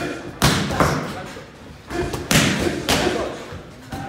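Punches landing on boxing focus mitts: several sharp smacks, some in quick pairs.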